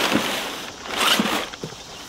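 Crumpled brown kraft packing paper rustling and crinkling as hands dig through it inside a cardboard box, in two spells, the second about a second in, then dying away.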